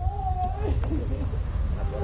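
A woman crying, her voice rising in drawn-out, wavering wails, with a low wind rumble on the microphone.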